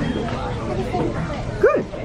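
Speech over the chatter of a restaurant dining room. Near the end a voice says "Good" with a quick rise and fall in pitch.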